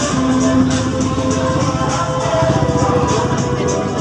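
Loud music with a steady beat and sustained notes.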